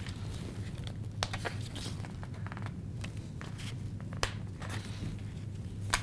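Light clicks and short rustles of a plastic circle-cutting guide and kraft poster board being shifted and lined up on a cutting mat, over a steady low hum.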